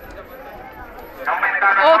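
A man speaking Italian over the public-address system, calling the race, starts loudly a little past halfway. Before that there is only faint roadside murmur.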